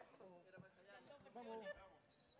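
Faint voices speaking off-microphone in a near-silent pause, with a short murmur of speech about one and a half seconds in.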